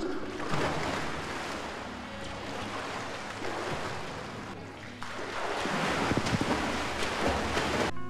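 Swimming-pool water splashing and sloshing: a noisy wash that fades off, then rises again suddenly about five seconds in.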